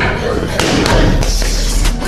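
Boxing gloves thudding in quick succession into a trainer's padded body protector and focus mitts, several sharp punches within two seconds.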